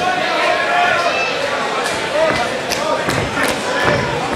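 Boxing-arena crowd noise with voices shouting, and a few sharp thuds of punches landing in the second half as the two boxers trade at close range.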